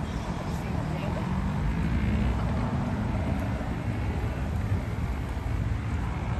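Idling vehicle engine: a steady low rumble.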